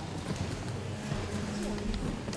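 Indistinct voices talking away from the microphone in a large hall, with scattered light knocks and clicks.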